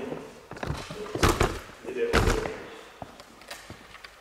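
Two heavy thumps about a second apart, with a voice speaking briefly between and after them and a few lighter knocks and clicks around them.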